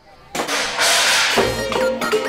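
A scene-change sound effect: a sharp hit about a third of a second in, then a bright, noisy swish lasting about a second, leading into background music with held notes.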